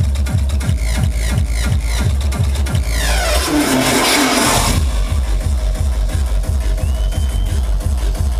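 Industrial hardcore played loud over a club PA: a fast, steady kick drum, with a burst of noise and a falling sweep about three seconds in before the kicks carry on.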